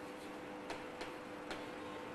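Chalk tapping and clicking against a blackboard while writing: three short sharp taps, about half a second apart. A faint steady hum runs underneath.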